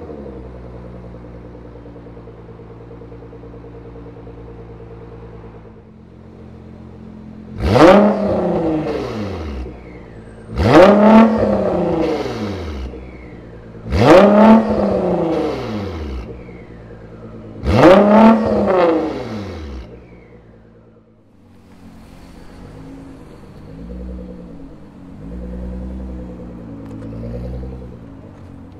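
Nissan GT-R R35's twin-turbo V6 through a Fi Exhaust valved cat-back with quad tips, idling and then free-revved four times, about three to four seconds apart. Each rev jumps up sharply and falls away slowly before the engine settles back to idle.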